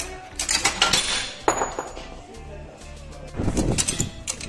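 Several sharp metal clinks and knocks from parts and tools being handled at a hydraulic shop press, just after the old front wheel bearing has broken free of the hub.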